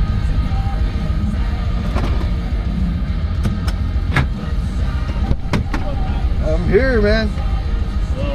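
Low steady rumble inside a Ram pickup's cab with the engine idling. Several sharp clicks come through the middle, including the seatbelt buckle being released about four seconds in. Near the end a door is opened and a short wavering voice is heard.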